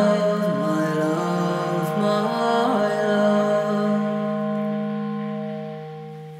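Music: a sustained organ chord held under a short melodic line, with no sung words, fading down over the last couple of seconds.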